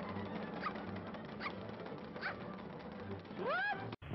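Old cartoon soundtrack: short high squeaks about once a second over a steady hiss, with a rising whistle-like glide near the end.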